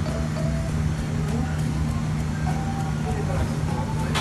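Restaurant ambience: a steady low hum, with faint background voices and music.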